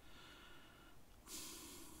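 Near silence: faint room tone, with a soft breath drawn in from a little past halfway.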